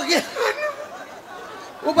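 A man speaking into a microphone: a short burst of speech, a pause of about a second, then speech again near the end.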